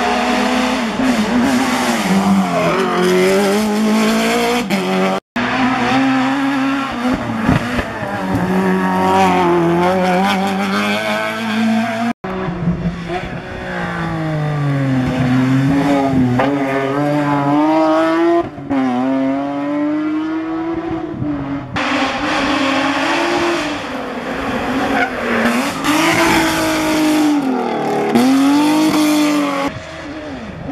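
Hill-climb race car engines revving hard, their pitch climbing through the gears and dropping as they lift off for corners, in several short runs cut together; one is a BMW E30 Touring rally car.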